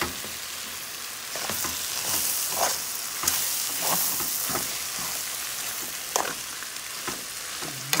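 Beans with calabresa sausage and seasoning sizzling as they fry in a metal pot, stirred with a spoon that scrapes against the pot now and then. The sizzle swells for a few seconds, from about a second and a half in.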